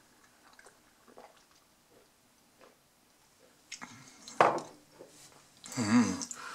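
A person sipping and swallowing tea from a glass mug, faint small mouth and swallowing sounds, then louder gulps or breaths about four seconds in and a sharp knock of the glass mug set down on a wooden table. A short voiced sound of appreciation comes near the end.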